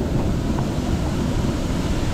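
Steady rushing of waterfall water, an even noise heaviest in the low end.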